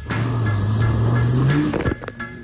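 Land Rover Discovery 4x4 engine revving up, its pitch rising, as the vehicle ploughs through a muddy water-filled rut with mud and water splashing, then dropping off sharply near the end; music plays under it.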